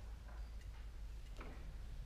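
Quiet hall: a steady low hum with a few faint, brief clicks and rustles, about one second apart.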